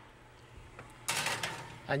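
A kitchen wall oven's door being opened and a gratin dish put in: a short scraping rattle about halfway through.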